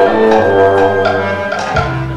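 Live pit orchestra playing an instrumental passage of a show tune, pitched instruments over a light percussion beat.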